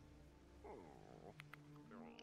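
Very faint soundtrack of an animated show: quiet sustained music tones, with a short pitched creature-like growl about halfway through.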